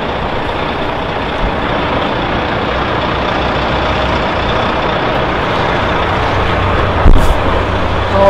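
Tipper lorry's diesel engine idling steadily, with a single thump about seven seconds in.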